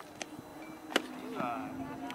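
A single sharp pop about a second in, a softball smacking into a leather glove, with a fainter click just before it. A short call from a voice follows.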